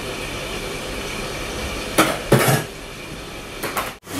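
A short clatter of hard objects knocking together about two seconds in, then again half a second later, with a few lighter clicks near the end, over a steady background hiss.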